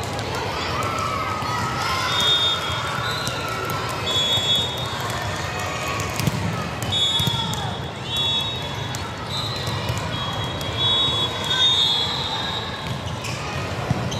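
Busy indoor volleyball hall: a constant din of many voices from players and spectators, scattered ball hits, and repeated high-pitched squeaks, each lasting about a second.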